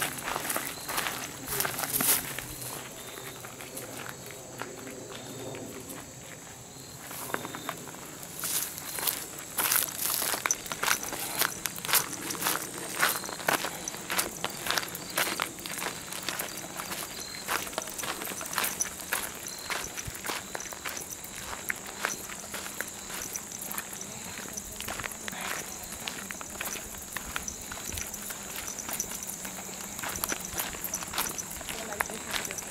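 Footsteps of several people walking on a gravel and dirt trail, an irregular crunching at a steady walking pace, softer for a few seconds near the start.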